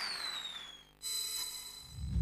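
The tail of a TV game show's closing theme music, fading with a falling synth tone. About a second in, a sustained chord starts abruptly and dies away.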